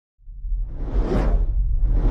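Whoosh sound effect from a logo intro sting: a deep bass rumble starts just after the beginning, and a whoosh swells and fades away about a second in.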